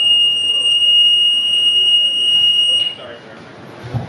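A loud, steady high-pitched electronic tone, one held pitch, that stops suddenly about three seconds in.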